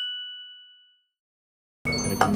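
A single bright chime sound effect for a title card, ringing out and fading away over about a second, then a short dead silence. Café room sound cuts in just before the end.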